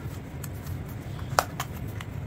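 A few light clicks and taps from a cardboard flashlight box and its insert being handled and packed. The sharpest click comes about one and a half seconds in, over a steady low hum.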